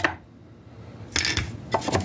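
Bandsaw-cut wooden drawer being dropped and slid into its slot in the wooden box body. There is a cluster of short wooden knocks and scraping about a second in, then a few lighter clicks near the end.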